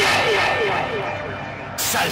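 Rhythmic noise (industrial electronic music): a short falling chirp repeats about five times a second as the high end is filtered away and the level sinks. Near the end the full, distorted sound cuts back in suddenly.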